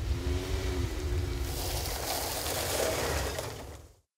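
A car driving, with a steady low rumble of road and engine noise under a hiss of wind and tyres, fading out near the end.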